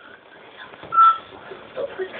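A single short, steady, high beep about a second in, over low room noise.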